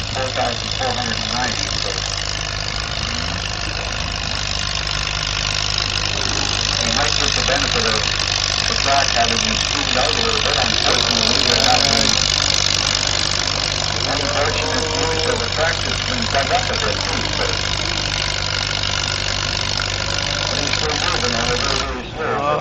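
Allis-Chalmers WD tractor's four-cylinder engine running hard under load while pulling a sled, growing louder toward the middle and easing off later. An announcer's voice talks over it throughout.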